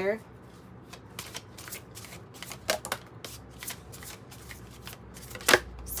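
A deck of oracle cards being shuffled by hand: a run of quick, soft card clicks, with one louder click about five and a half seconds in.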